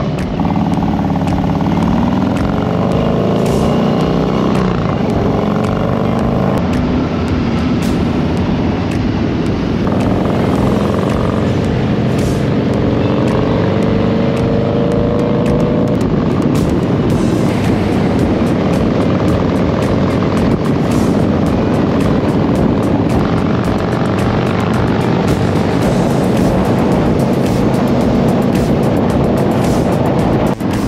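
Harley-Davidson motorcycles riding in a group at freeway speed. The engine pitch climbs and drops back several times in the first half, as the bikes pull away through the gears, over steady road and wind noise.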